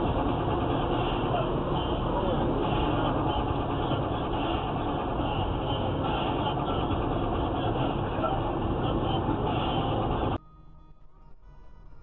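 Steady road and engine noise from inside a car driving at highway speed, recorded by a dashcam. It cuts off abruptly about ten seconds in, leaving only faint steady tones.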